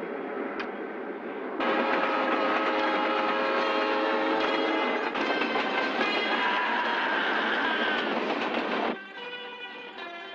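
Freight train running, a loud rolling rumble and clatter that gets louder about a second and a half in, with several steady tones sounding together over it. It drops away shortly before the end.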